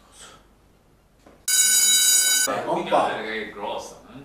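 A loud electronic beep about a second and a half in: one steady tone held for about a second, starting and stopping abruptly. Speech follows it.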